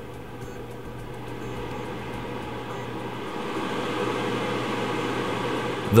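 Honeywell QuietCare HCM-6011G console humidifier's fan running with a steady hum and airy rush, getting louder over the few seconds as it is switched up through its speed settings.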